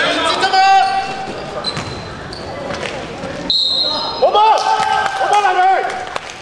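Basketball game sounds echoing in a sports hall: the ball bouncing on the court and players' voices, with a referee's whistle blown sharply about halfway through, then more calls from the players.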